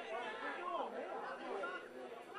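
Several people's voices talking and calling out at once, overlapping, with no clear words.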